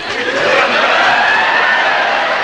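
Studio audience cheering and whooping: a loud, steady wash of many voices with a few rising whoops, swelling about half a second in.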